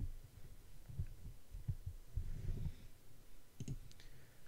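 Quiet room with a few soft low thuds, then a few short, sharp clicks near the end.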